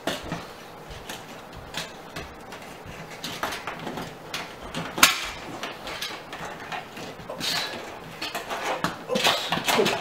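A steel microwave wall mounting plate clinking and scraping against the wall as it is handled and moved into position: irregular light metal knocks, with the sharpest click about halfway through and a busier run of knocks near the end.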